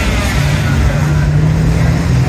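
Bus engine running with a steady low drone, heard from inside an open-sided bus along with road and traffic noise.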